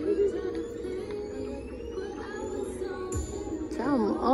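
Music for a stroll routine: held tones with slow rising sweeps and a deep bass hit about three seconds in. A melody line with a wide, wavering pitch starts just before the end.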